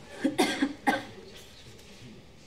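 A young woman coughing: a short run of several coughs in quick succession within the first second, the sign of a mild cold.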